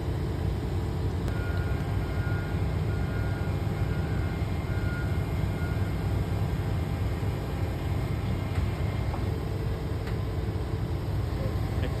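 Komatsu PC490HRD-11 high-reach demolition excavator's diesel engine running with a steady low drone, under hydraulic load as the arm picks up a demolition shear on its quick coupler.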